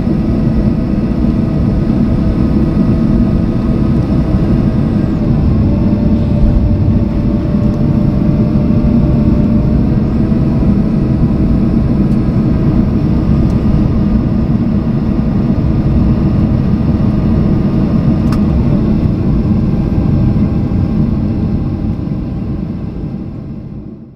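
Cabin noise of a Boeing 737-800 taxiing after landing: a steady, loud rumble from the CFM56-7B engines at idle and the airframe, with faint engine tones that shift slightly about five seconds in and again about ten seconds in. It fades out over the last few seconds.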